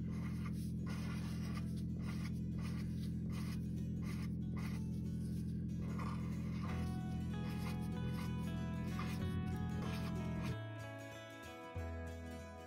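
A felt-tip pen scratching on paper in short, repeated strokes as circles are drawn, over a steady low hum. Background music with sustained notes comes in about halfway and continues to the end.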